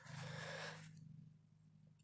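A faint breath-like exhale lasting about a second, then near silence.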